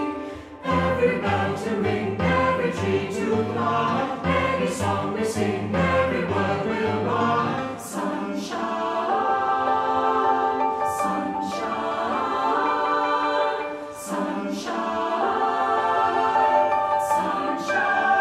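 Mixed choir singing a choral piece in several parts with piano accompaniment, the lyrics running "Every stream a river, every pool the sea" into "Sunshine". The music thins briefly just after the start and again about fourteen seconds in.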